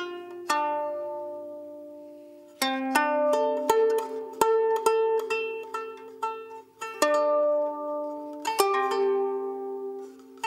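Solo guzheng, a Chinese plucked zither, played melodically. A single plucked note is left to ring for about two seconds, then comes a quicker run of plucked notes, another long-ringing note, and a flurry of plucks toward the end.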